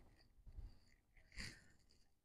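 Near silence, with only a couple of faint, brief sounds.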